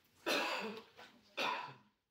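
A man clearing his throat with two short, rough coughs about a second apart.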